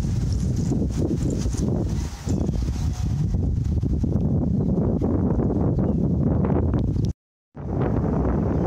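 Heavy low rumbling of wind buffeting an action camera's microphone outdoors, with irregular knocks and scuffs from the camera being handled. The sound drops out for a moment near the end at an edit.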